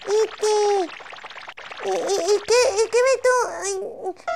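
A very high-pitched cartoon-style puppet voice: one long held note in the first second, then a quieter moment, then a run of short, quick babbling syllables.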